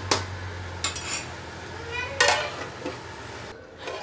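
Metal kitchenware clinking: a ladle tapping against an aluminium cooking pot, then a steel plate set down on the pot as a lid, with one loud clank and a brief metallic ring just after two seconds in.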